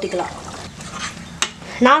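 A ladle stirring milky vegetable kurma in a pan, a steady swishing, with one sharp click of the ladle against the pan about one and a half seconds in.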